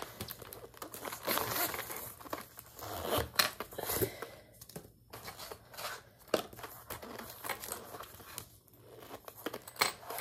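Paper money and cards being handled: irregular crinkling and rustling with small taps and clicks as they are sorted into a zippered wallet, pausing briefly about halfway through.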